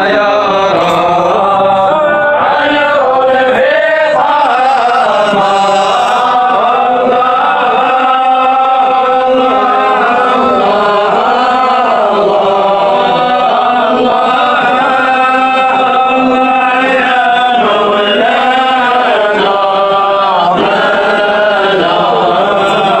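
A man's voice chanting Sufi samāʿ: a slow, drawn-out melodic line with long held notes and ornamented turns, sung without break.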